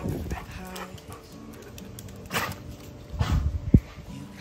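Alaskan Malamute vocalizing in a few short bursts, over background music.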